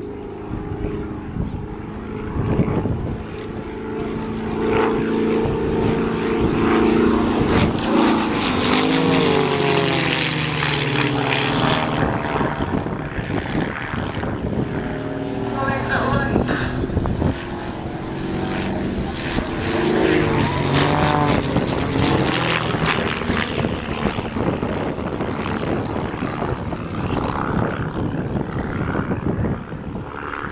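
Two Van's RV-7 light aircraft flying aerobatics in formation, their piston engines and propellers running hard. The engine note holds steady at first, then rises and falls in pitch several times as the planes climb, dive and pass overhead.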